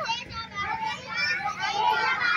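Many children's voices at once, talking over one another.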